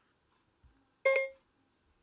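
A single short electronic beep with a clear pitch, about a second in.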